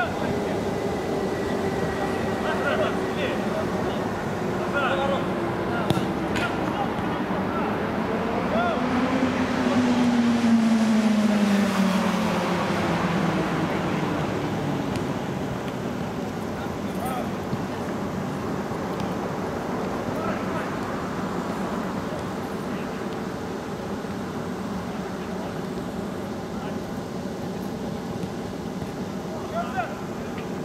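Outdoor small-sided football match: distant players' shouts and calls over a steady background hum, with a few sharp ball-kick knocks. A passing motor vehicle swells to the loudest point about ten seconds in, its pitch falling as it goes by.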